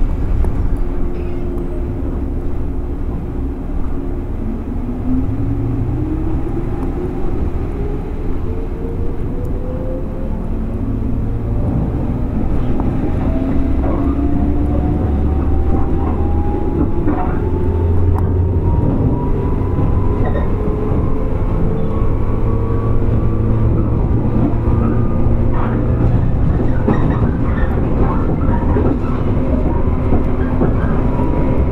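Running sound of a JR 115 series 1000 subseries electric motor car (MoHa 114): the traction motor and gear whine climbs steadily in pitch over about twenty seconds as the train gathers speed, over a constant rumble of wheels on rail with occasional clicks.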